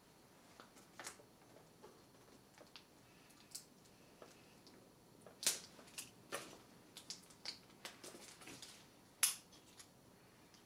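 Faint, scattered clicks and taps of a broken multi-colour click pen being handled, at uneven intervals, the loudest about five and a half seconds in and shortly before the end.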